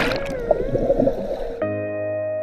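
Muffled underwater rush and churn of bubbles as people plunge into a swimming pool, heard through a submerged action camera, with a faint wavering tone over it. About one and a half seconds in, a sustained electric-piano chord of background music cuts in.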